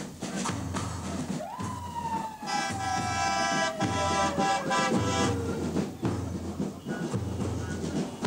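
Music with a repeating low beat. About a second and a half in, a siren-like tone leaps up and then slides slowly down over about four seconds.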